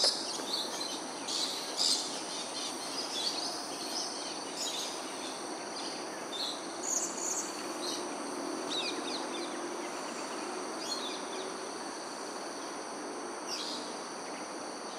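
Short high chirps from small birds, scattered every few seconds, over a steady high-pitched insect drone and a constant low background hum.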